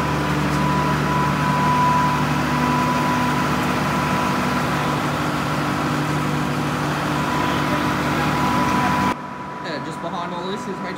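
Diesel locomotive engine idling steadily, with a constant high whine over its low running note. The sound cuts off abruptly about nine seconds in, leaving a quieter background.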